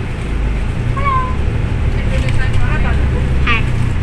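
Steady low engine and road rumble inside a moving bus's cabin, with brief snatches of voices over it.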